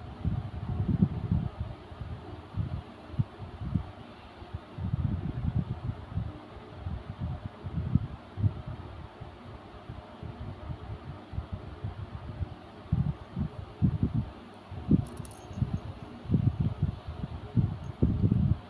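A cat rummaging in bedding on a bed, searching for a hidden toy: irregular soft rustles and dull thumps of blanket and mattress, with a steady low hum behind.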